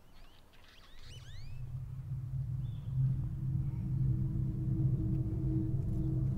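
A low, steady rumbling drone swells in about a second in and keeps growing louder, with a few high chirps at the very start.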